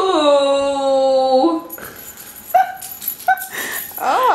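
A dog whining: one long drawn-out whine lasting about a second and a half, dipping slightly at the start and then held steady, followed by two short whimpers.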